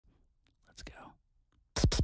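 ASMR-style beatboxing: a soft, breathy, whisper-like mouth sound, then near the end a sudden fast roll of bass-heavy beats, about ten a second.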